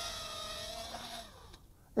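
Faint whine of a mini racing quadcopter's small brushless motors just after landing, sagging a little in pitch and fading out over about a second and a half, then near silence.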